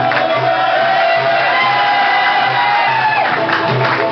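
Live party music: a long held, slightly gliding melody over a steady drum beat, with a crowd cheering and whooping.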